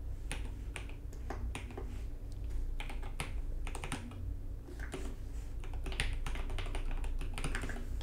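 Typing on a computer keyboard: quick, irregular keystroke clicks in short runs.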